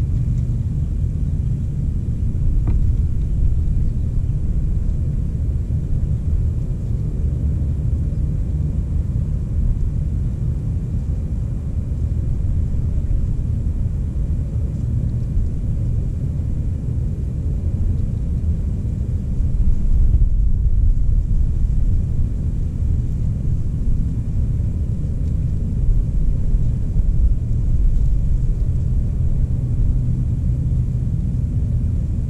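Low, uneven rumble of wind buffeting the camera microphone, swelling a little about two-thirds of the way through.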